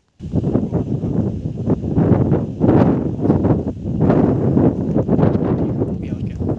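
Wind buffeting the microphone: a loud, gusting rumble that comes in abruptly just after the start and surges up and down throughout.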